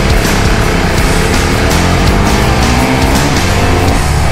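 Motorcycle engine under acceleration, its pitch rising steadily as it revs up, with rock music with a driving beat laid over it.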